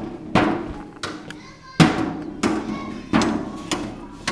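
Guitar strummed five times: one strum, a pause, then four more in quicker succession about two-thirds of a second apart, each chord ringing briefly and fading.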